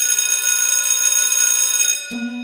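Electric school bell ringing steadily, starting suddenly and cutting off after about two seconds.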